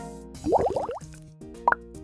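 Cartoon soap-bubble sound effects: a quick run of rising 'bloop' plops about half a second in and another single bloop near the end, over light children's background music.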